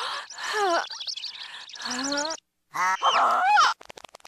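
Dexter's Mom's cartoon voice crying out, heavily altered by audio effects so that no words come through. It sounds as high pitched glides that bend up and down in several bursts, with a short break of silence about two and a half seconds in.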